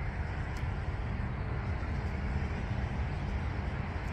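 Steady low rumble of distant road traffic, with no single event standing out.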